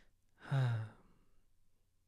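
A man's brief, breathy sigh about half a second in.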